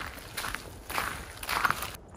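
Footsteps on a loose gravel road, a few steps at a walking pace.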